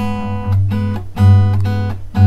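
Steel-string acoustic guitar fingerpicked in a repeating plucking pattern. A low G bass note on the sixth string rings under higher strings plucked together, with several plucks about half a second apart.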